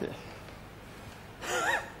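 A man's short vocal sound near the end, a breathy gasp with a rising-then-falling pitch that begins a laugh. Before it there is only faint room tone.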